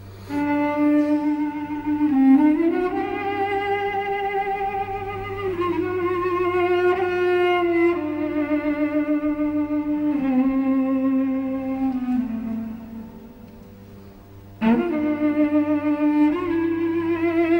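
Solo cello playing a slow melody of long bowed notes with vibrato: an ancient Armenian song transcribed from the duduk. The line slides up early on, then steps slowly down and fades away, and a new note starts sharply near the end.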